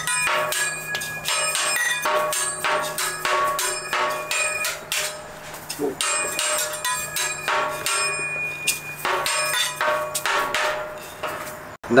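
Metal hibachi spatula repeatedly striking metal salt and pepper shaker cans, several clanging hits a second, each ringing with a bright metallic tone, with a brief lull about halfway through.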